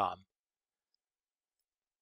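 The last word of a narrating voice ends a quarter of a second in, followed by dead silence.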